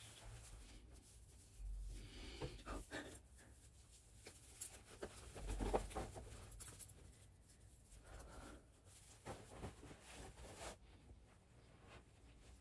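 Soft rustling of a hand-knitted sweater being pulled on over the head and tugged down into place, with small handling and shuffling noises; the loudest rustle comes about six seconds in.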